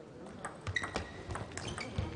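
Table tennis doubles rally: the plastic ball clicking sharply off rackets and table in a quick string of hits, with a brief high tone about a second in.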